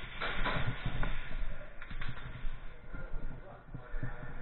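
Indistinct voices of players mixed with movement noise (footsteps, gear rustling and short knocks) in an indoor airsoft arena.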